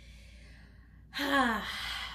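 A woman breathes in, then lets out a long, loud sigh about a second in, voiced and falling in pitch, as she settles herself to pray.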